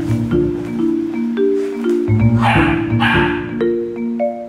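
Background music with a marimba-like melody, and about halfway through two short barks from a golden retriever puppy.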